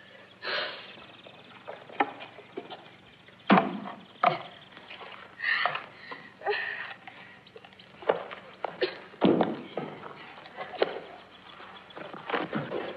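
A young girl's straining grunts and breaths as she struggles up onto a pony, mixed with scattered sharp knocks and thumps; the loudest knocks come about three and a half and four seconds in.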